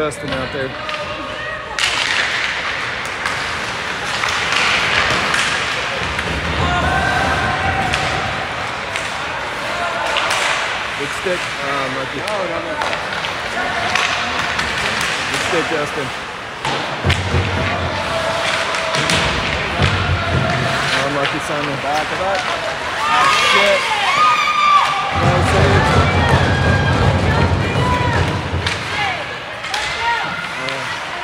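Ice hockey rink during play: spectators' voices and chatter over scattered thuds and clacks of sticks, puck and players hitting the ice and boards.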